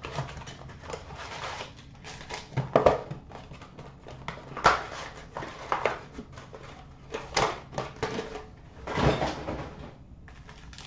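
Hands opening a cardboard trading-card blaster box and handling the packs inside: scattered rustling and crinkling with sharper knocks, loudest about 3, 5, 7.5 and 9 seconds in.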